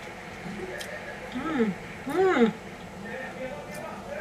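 A woman humming twice, "mm" rising and falling in pitch, while chewing a mouthful of tinned stewed meat and savouring it.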